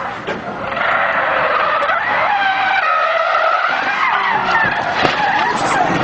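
Car tyres squealing in a long, wavering screech as a sedan drifts sideways, starting about a second in.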